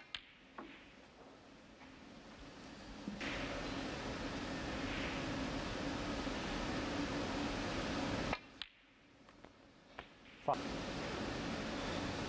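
Snooker balls clicking: the cue tip striking the cue ball and balls knocking together, a few sharp clicks, two at the start and a few more later on. Between them a low hall hum cuts in and out abruptly.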